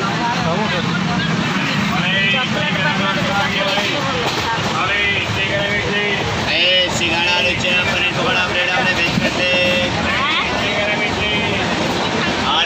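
Several people talking inside a train carriage over the steady running noise of the train.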